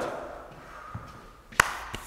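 A sharp tap with a short ring about one and a half seconds in, and a fainter tap near the end: a shoe stepping on a concrete floor.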